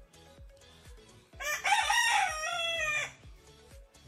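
A rooster crowing once: a single long call of about a second and a half, starting about a second and a half in.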